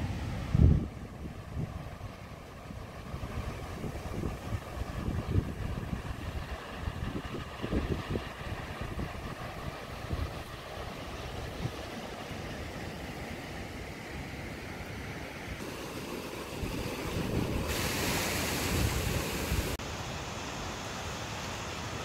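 Surf washing on a beach, with wind gusting over the microphone as low, uneven rumbles. About eighteen seconds in the hiss turns brighter and louder for a couple of seconds.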